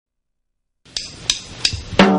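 Drummer's count-in: drumsticks clicked together three times, about a third of a second apart, over faint tape hiss that starts just before the first click.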